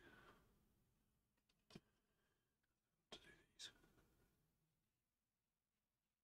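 Near silence, with a few faint breathy sounds near the start and again a little past halfway, and one soft click.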